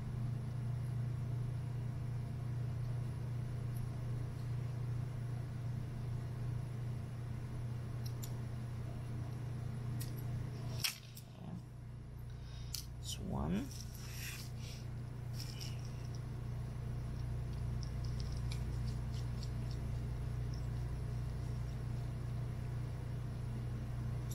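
Steady low hum, with a few small clicks and taps about halfway through as a precision screwdriver and tiny screws are handled against a plastic screwdriver case.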